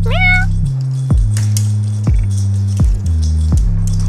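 A cat's single short meow rising in pitch right at the start, over electronic background music with a steady beat and bass line.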